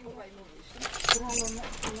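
A large bunch of metal keys jangling in a hand, with dense high clinking starting a little under a second in.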